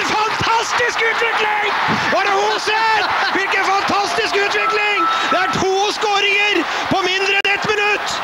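A man shouting excitedly in long, high-pitched calls.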